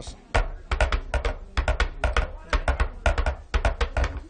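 Cups clopped to imitate a horse's hoofbeats, the old radio sound-effect trick. The clops come in quick groups of three about twice a second, like a horse on the move.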